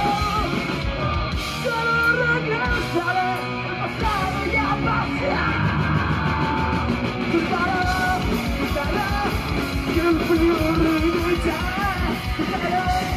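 Live punk rock band playing loud: electric guitars, bass and drums, with the singer yelling the vocals into a microphone.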